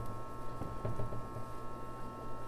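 Hands pressing loose potting soil down into a glazed ceramic bonsai pot, a faint soil rustle about half a second to a second in, over a steady electrical hum.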